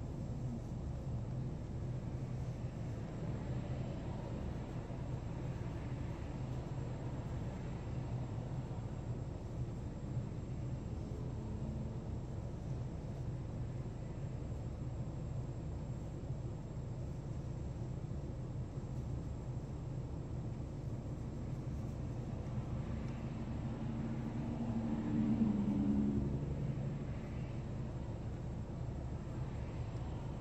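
Steady low hum inside a car cabin while the car idles at a standstill. About 25 seconds in, another vehicle's engine swells louder for a couple of seconds as it draws up alongside.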